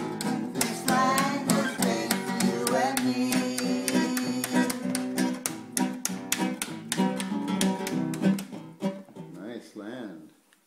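Acoustic guitar strummed in a steady rhythm, a few strokes a second, with a voice singing along at times. The playing dies away near the end.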